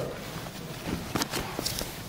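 Jiu-jitsu gi cloth rustling and bodies shifting against the floor mat as two grapplers move, with a few soft knocks and scuffs about a second in.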